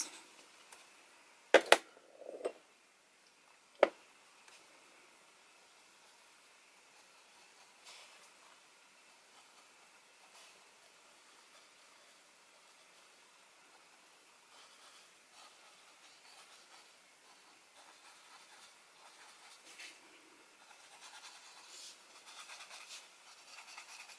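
A few sharp clicks in the first seconds, then faint scratching of a small brush worked over charcoal on paper, growing a little louder toward the end.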